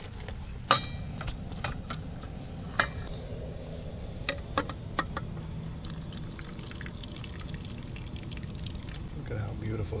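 Cooked berry mash and juice pouring from a stainless steel pot into a metal strainer over another pot, with a spoon scraping the pot and a few sharp metallic clinks in the first half.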